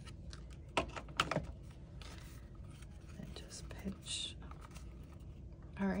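Cardstock paper being handled and wrapped around a paper rose bud: a few sharp taps and clicks about a second in, then soft paper rustling.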